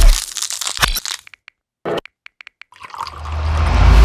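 Cut-up montage audio: short clipped snippets and clicks, then a gap of near silence broken by a few clicks. Over the last second a whoosh transition effect swells with a deep rumble, building to its loudest at the end.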